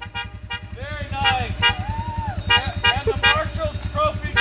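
Music with a heavy, steady bass beat playing from a passing parade car's stereo, with voices calling out over it.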